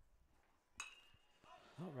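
A metal baseball bat hitting a pitched ball once, about a second in: a sharp ping with a brief ring, the contact of a foul ball.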